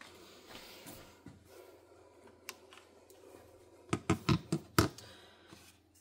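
Handling noises from a folding phone and its charging cable being put down on a worktop: a single click, then a quick run of about five sharp knocks and clicks about four seconds in.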